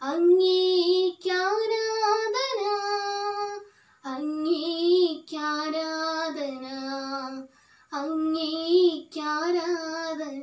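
A young woman singing solo and unaccompanied, holding and bending long notes with vibrato in sung phrases broken by two short breaths, about four and about eight seconds in.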